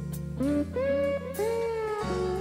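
Instrumental rock: an electric lead guitar plays sustained notes, several bent upward into pitch, over held bass notes and light cymbal ticks.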